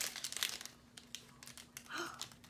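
A paper wrapper crinkling and rustling as it is handled and pulled open: a dense run of crackles at first, thinning out after about half a second.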